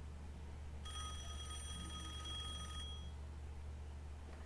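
A telephone bell rings once, a single ring of about two seconds starting about a second in.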